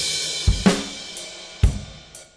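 Sampled acoustic drum kit from the BFD2 plugin playing back a drum part. A cymbal crash rings out and slowly fades while a few separate drum hits sound.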